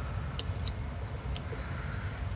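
A few faint, short clicks as a small FPV camera is pressed into 3D-printed plastic brackets by hand, over a low steady hum.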